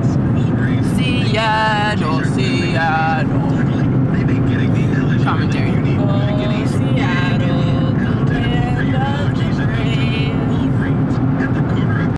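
Car interior noise while driving: a steady low road and engine rumble fills the cabin. Voices talk over it now and then.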